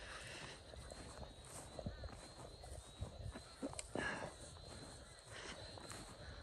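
Faint footsteps through dry paddock grass with soft scattered knocks and swishes, and one brief louder rustle about four seconds in. A faint, steady high tone sits behind them.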